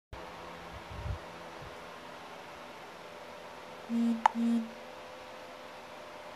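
Steady low room hiss picked up by a phone microphone, with a few low handling bumps about a second in. About four seconds in come two short, steady low tones with a sharp click between them.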